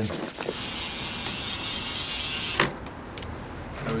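A steady, high hiss with a fine mechanical buzz under it, lasting about two seconds and stopping abruptly.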